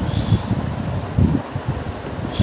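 An orange plastic plate handled right against the phone's microphone: irregular low bumps and rubbing, loudest about a third of a second in and just past the one-second mark.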